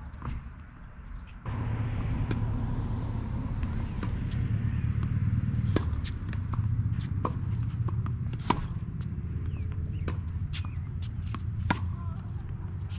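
Tennis balls struck by rackets and bouncing on a hard court in a baseline rally: sharp pops about every one to two seconds. A steady low rumble sets in about a second and a half in.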